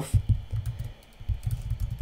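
Typing on a computer keyboard: a quick run of muffled keystrokes, a short pause about a second in, then more keystrokes.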